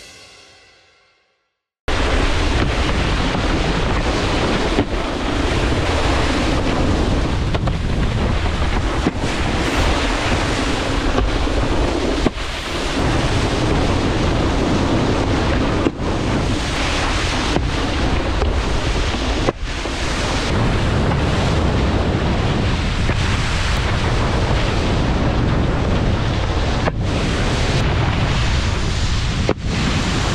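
Wind buffeting an action camera's microphone over the rush and splash of a wakeboard skimming and carving across water, loud and steady, with abrupt breaks every few seconds where the footage is cut.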